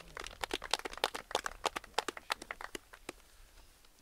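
A small group applauding: scattered hand claps that thin out and stop about three seconds in.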